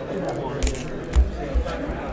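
Foil trading-card packs being handled and cut open with a knife: a short sharp cutting sound just past half a second in, and a louder knock a little over a second in, over faint background music and voices.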